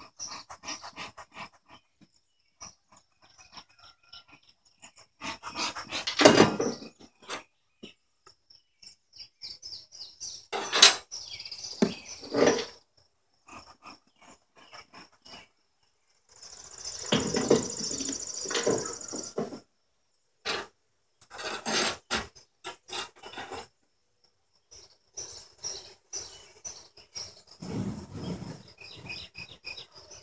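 Wooden observation hive's door being worked loose and pulled open where the bees have glued it shut with propolis: a series of separate scrapes, creaks and knocks of wood, the longest a rasping scrape about 17 to 19 seconds in. A faint, steady high-pitched trill runs underneath.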